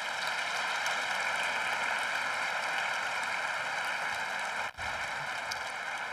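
Large audience applauding, a steady even clapping that eases slightly near the end, with an instant's break just before five seconds in.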